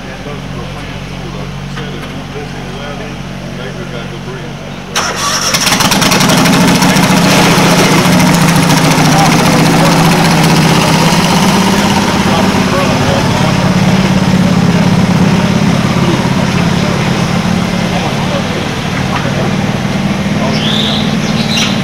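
Garden tractor engine starting about five seconds in, then running loud and steady. Before it starts, a quieter engine idles.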